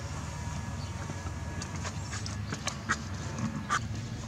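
Light, irregular clacks and knocks of a steel trailer tire leveler and its crank handle being handled, over a steady low rumble. The knocks start a little over a second in.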